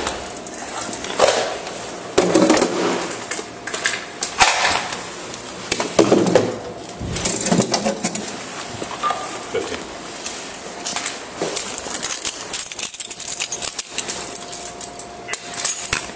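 Steel weapon-storage locker being handled: a series of irregular metallic clanks and clicks as a compartment door is pushed shut and a key is turned in its lock.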